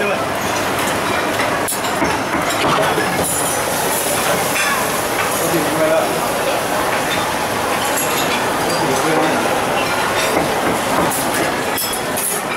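Busy commercial kitchen din: a steady rushing noise of gas burners and kitchen machinery, with scattered clinks of metal utensils and bowls and some background voices.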